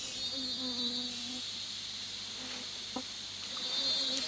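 Steady, high-pitched pulsing chorus of rainforest insects, with a single faint click about three seconds in.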